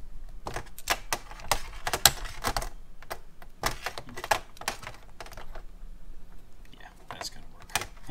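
A string of quick clicks and taps from hands working a log of soft sprue wax and handling a metal wax extruder tube on a stainless-steel workbench. The taps are busiest in the first few seconds and thin out later.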